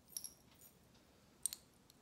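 Metal jewelry chains and pendants clinking lightly as they are handled: a brief ringing clink just after the start and another about a second and a half in.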